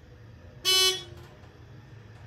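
ThyssenKrupp Classic elevator's electronic chime sounding once, a short loud beep about half a second in, as the car reaches the first floor, over the low steady hum of the moving car.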